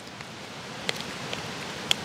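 Strong wind through the trees as a steady, even hiss, with a few faint clicks of a spoon stirring damp dough in a plastic bowl.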